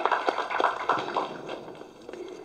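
Light, scattered handclaps from a small audience as a speech ends, thinning out and fading away.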